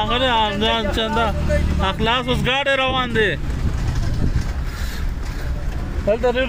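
A man's voice in long, pitch-bending phrases for about the first three seconds. Then the low, steady rumble of a car driving slowly over a rough dirt track.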